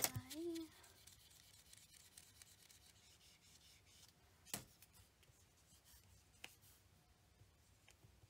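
Faint strokes of a marker pen writing on a small whiteboard, with a brief voiced sound at the start and a sharp tap about four and a half seconds in.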